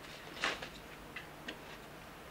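A few faint, irregularly spaced clicks, the sharpest about a quarter of the way in, over a low steady hum.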